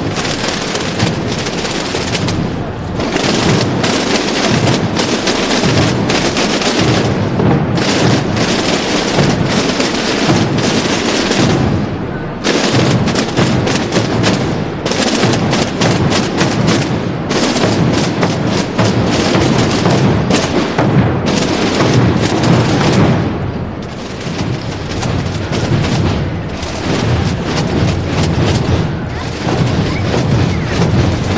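Massed procession drums and bass drums played together: a loud, dense rattle of many snare-type drums with regular deep bass-drum booms beneath, easing off briefly twice.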